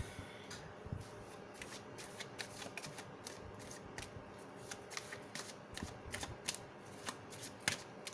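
A deck of cards being shuffled overhand by hand, packets of cards tapping and sliding against each other in a run of soft, irregular clicks, with one louder snap near the end.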